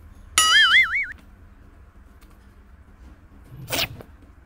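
A warbling, wavering whistle-like tone lasts well under a second, starting about half a second in. Near the end a bullfrog gives a short, harsh squawk with its mouth gaping wide.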